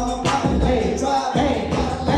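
Live hip hop music: a loud beat with heavy bass and a vocal line over it.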